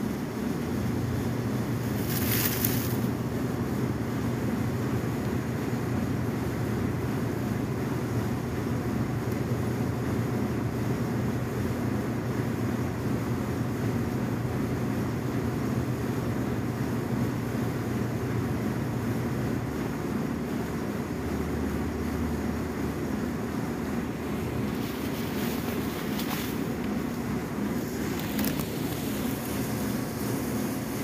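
A large truck engine running steadily with a deep, constant drone. Its low hum drops to a lower pitch about twenty seconds in. Brief high hisses come about two seconds in and again near the end.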